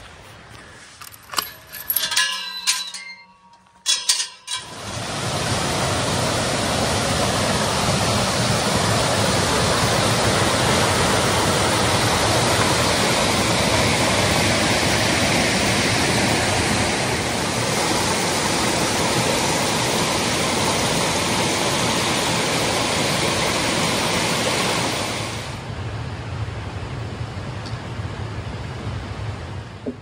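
Creek water rushing over rocks, a steady rush that sets in about four seconds in and drops to a lower level about four seconds before the end. A few brief clicks and knocks come at the start.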